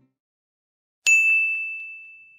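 A single bright ding sound effect strikes about a second in, then its one high tone rings on and fades away slowly.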